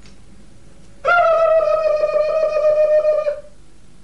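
A single loud held note of a musical instrument, a little over two seconds long, starting about a second in and sagging slightly in pitch as it fades out.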